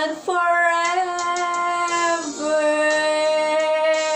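A woman singing the closing line of a slow ballad, holding long notes; about two seconds in the pitch steps down to a final note that is held steady.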